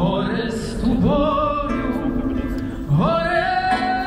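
Music with a solo singing voice, sliding up into long held notes with vibrato, twice, over a steady accompaniment.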